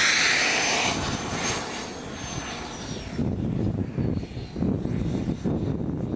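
Small gas-turbine engine of a Jet Legend F-16 scale RC jet running on the ground. It starts with a loud high whine and hiss whose tone falls in pitch and fades over the first couple of seconds as the jet moves off, leaving a quieter, uneven low rumble.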